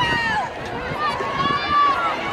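Spectators shouting encouragement to a relay runner: a short high yell at the start, then a long drawn-out high call from about a second in.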